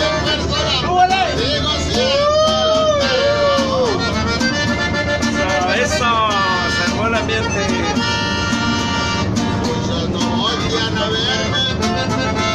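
Live norteño music: a button accordion and a strummed bajo sexto playing a lively rhythm, with voices over it, heard inside a moving bus.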